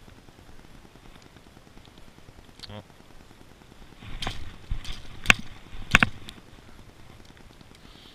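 Spinning rod and reel handled against a chain-link fence: a few sharp clicks and knocks in the middle, the two loudest about a second apart.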